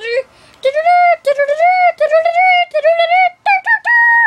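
A child's voice singing a high-pitched wordless tune, a run of held notes broken by short gaps, stepping higher near the end.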